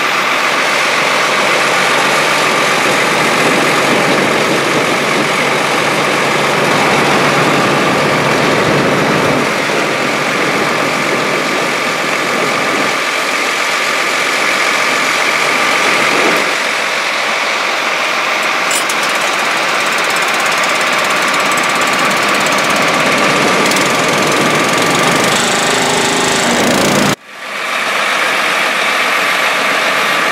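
A machine engine running steadily while liquid nitrogen fertilizer is pumped through a hose from a tanker trailer into a crop sprayer. The sound drops out suddenly for a moment near the end.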